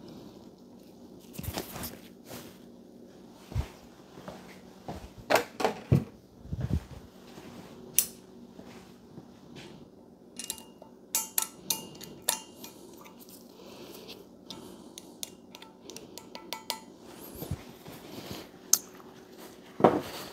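Small metal valve spring seats clinking and tapping against an aluminium cylinder head as they are handled and set into the valve bores. The clicks are scattered, with a run of quick, light ticks in the second half.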